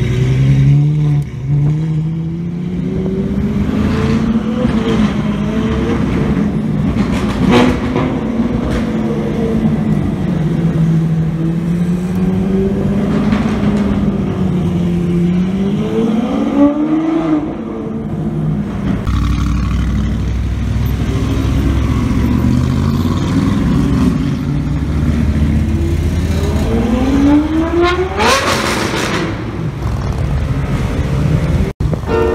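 Ferrari 812 Novitec N-Largo's V12 running at low revs in street traffic, its pitch slowly rising and falling as it moves off and eases. Near the end an engine revs sharply, its pitch climbing steeply.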